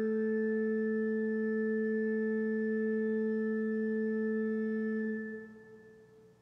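Pipe organ holding a single chord of steady tones, released about five seconds in, the sound then dying away in the cathedral's reverberation.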